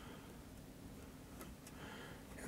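Very quiet room tone with a faint steady low hum and a couple of faint ticks about one and a half seconds in.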